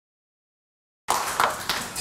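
Dead silence for about a second, then the sound of a small lecture room cuts in abruptly with several sharp clicks or knocks, roughly three a second.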